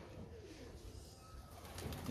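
Domestic pigeons cooing faintly.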